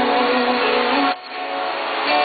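Live amateur band music: a girl's amplified voice holds a sung note that ends about a second in, with electric guitar and keyboard playing under it. After a brief dip in loudness the instruments carry on.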